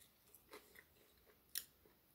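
Faint chewing of a slice of crispy-baked pepperoni pizza, with one sharper crunch about one and a half seconds in.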